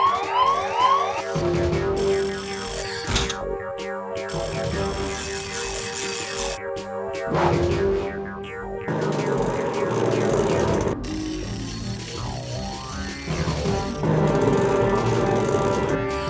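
Cartoon launch-sequence music with machine sound effects: a repeating rising siren-like alarm stops about a second in, followed by held tones, a few sharp knocks and stretches of hissing as a robotic claw loads a launch pod.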